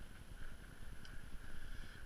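Faint footsteps of someone walking on a snowy path, over a low, uneven rumble on the camera's microphone.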